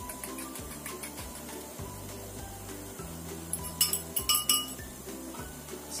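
Background music with a steady, repeating bass line. About three and a half seconds in, a quick run of sharp clinks as a spoon knocks against a ceramic bowl while beaten egg is scraped out into a frying pan.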